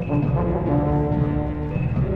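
Orchestra playing from a 1947 78 rpm recording: low held brass and wind notes that change pitch several times, over a steady beat of drums.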